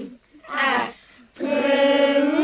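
Unaccompanied singing voice in a gospel song: a short sliding note about half a second in, then a long held, wavering note from about a second and a half in.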